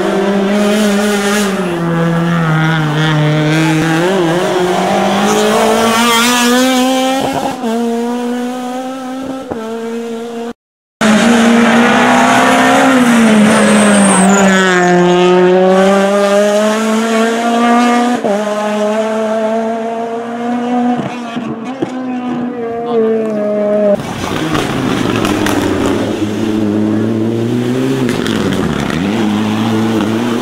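Rally car engines revving hard as the cars pass one after another, pitch climbing and dropping with throttle and gear changes. The sound cuts out completely for a moment about ten seconds in and changes abruptly again later, at edits between cars.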